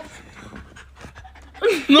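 A person breathing in a series of quick, short puffs. A voice starts near the end.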